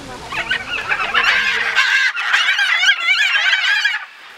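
A flock of macaws calling: many overlapping squawks and chattering calls that start just after the beginning and grow louder about a second in.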